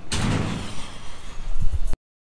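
A door being opened with a sudden loud clatter that fades, followed by a few heavy thumps near the end, before the sound cuts off abruptly.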